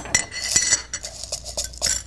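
Small metal tin of calcium carbide chunks being opened and handled: a run of scrapes and light metallic clinks, with a brief ringing squeak just after the start.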